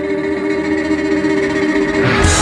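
Music: a band holding one sustained chord, with a bowed-string sound.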